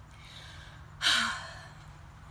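A woman's audible sigh: a breathy exhale about a second in that fades out over about half a second.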